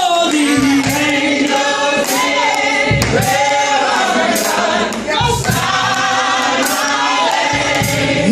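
A group of voices singing a gospel song together in harmony, holding long notes, with a steady beat of sharp hits underneath.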